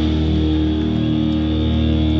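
Live rock band with electric guitars and bass holding a sustained chord, the notes ringing out steadily.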